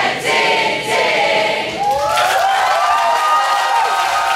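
A large group of young voices singing and chanting together: short shouted lines at first, then, about halfway in, many voices holding one long note at once.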